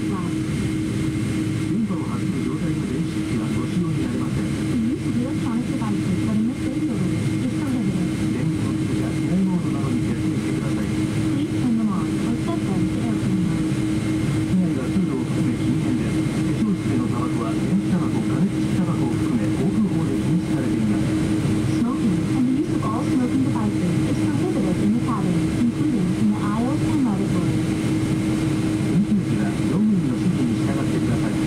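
Cabin noise of a Boeing 777-200 taxiing: a steady drone from the jet engines at taxi power with a constant hum. Indistinct passenger chatter runs underneath.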